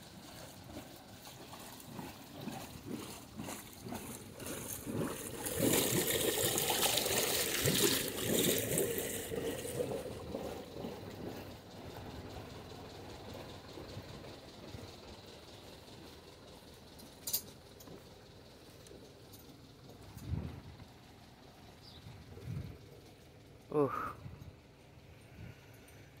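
Perkins 4-107 four-cylinder marine diesel idling, with its cooling water splashing out of the wet exhaust outlet at the stern. The wash is louder for a few seconds in the first half.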